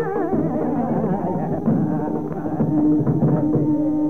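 Carnatic classical music in raga Kambhoji: a melodic line with fast oscillating ornaments over mridangam strokes, settling on a long held note about three seconds in.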